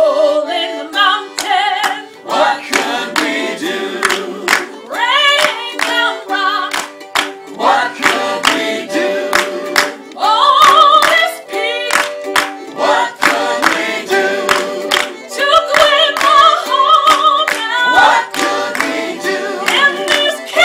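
Gospel choir of men and women singing together in several parts, with hand claps keeping time.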